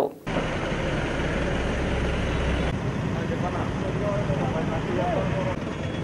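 Street traffic noise with vehicle engines running and idling, under faint indistinct voices.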